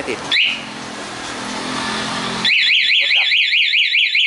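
Honda MSX125's single-cylinder engine idling as the anti-theft alarm's lock button is pressed, with a short rising chirp from the alarm. About two and a half seconds in, the engine cuts out and the alarm siren starts, a loud fast up-and-down wail of about four sweeps a second. The immobiliser has been triggered to stop a theft with a fake key.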